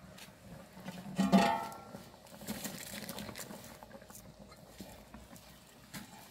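Aluminium pot lid knocking and ringing against the rim of a large cooking pot as it is lifted off, one loud metallic clang about a second in, followed by quieter clattering.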